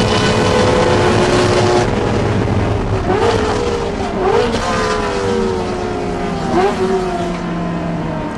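Ferrari 360 Challenge's V8 heard from inside the cabin, running hard at first, then falling in revs as the car slows for a corner, with three short blips of revs on downshifts.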